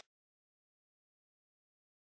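Silence: the sound track is cut to nothing during a title card.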